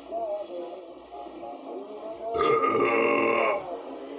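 A man burps once, loud and drawn out for over a second, about halfway through, over faint background music.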